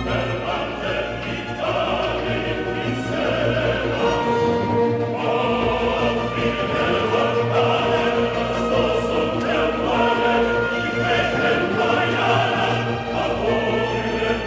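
Opera chorus singing in German with a classical orchestra, the music running on without a break.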